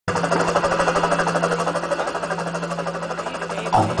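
A rapid, steady rattling buzz over a constant low hum, which stops as a voice begins near the end.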